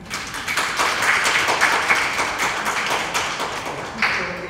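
Audience applauding: dense clapping that swells up within the first second and dies down near the end.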